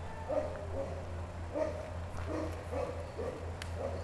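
Dogs barking and yipping faintly, short scattered calls throughout, over a steady low hum.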